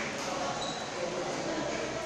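Voices chattering in a large hall, with one sharp tap of a table-tennis ball right at the start.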